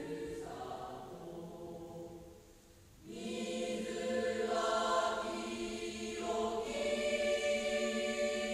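A choir of voices singing slow, sustained notes. One phrase fades out about two and a half seconds in, and a fuller phrase of long held notes begins at about three seconds, with a short breath break a little after six seconds.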